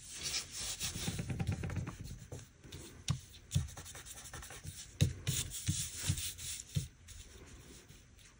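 Fingertips rubbing and pressing a paper sticker flat onto a planner page, smoothing it down. The rubbing is densest in the first two seconds, then gives way to a few scattered soft taps of the fingers on the paper.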